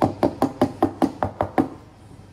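A quick run of about nine hard knocks, roughly five a second, made by barista work at an espresso bar; they stop a little before the end.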